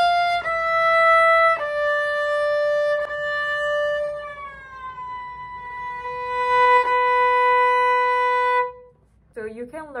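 A violin is bowed on the A string, stepping down through three held notes (F natural, E, D) in third position. The first finger then slides slowly down, an audible shifting glide into first position, and the note is held until about a second before the end.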